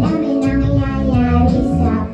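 Young female vocalist singing live into a microphone over instrumental accompaniment, her voice moving through a sustained melodic line.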